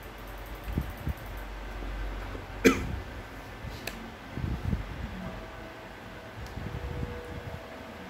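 A single short cough about two and a half seconds in, among low thumps and rustles of the phone and clip-on microphone being handled.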